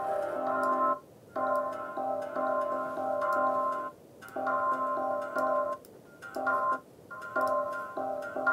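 Drum loop played through a Space Designer convolution reverb with a drone-tone impulse response and the dry signal muted: the drums trigger a synth-like chord of steady tones that starts and stops in rhythm with the groove, with short silent gaps. The reverb's decay is being pulled shorter to make the tone more percussive.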